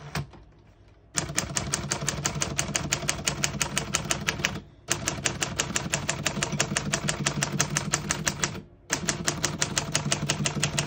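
1947 Smith-Corona Clipper portable typewriter's keys being struck in a fast, even run of typebar clacks, about nine a second. The run starts about a second in and has two short breaks, one near the middle and one near the end.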